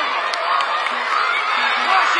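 Crowd of spectators at a youth football match, many voices shouting and calling out over one another, high children's voices among them.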